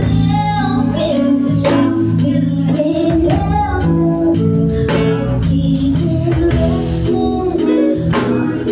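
Live band playing a song: a woman singing lead over electric guitar, bass guitar, keyboard and a drum kit with a steady beat.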